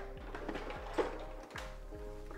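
Background music with a steady beat and held synth tones. A single brief click about a second in.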